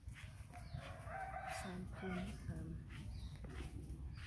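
A rooster crowing once, starting about a second in.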